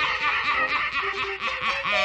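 A man's theatrical villain's laugh, loud and unbroken: a cackling, honking cackle.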